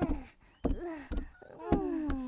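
A cartoon child's voice moaning with tiredness in drawn-out wordless groans, the last a long falling "aah". A couple of short knocks sound in between.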